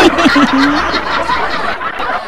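Several people laughing at once, their voices overlapping.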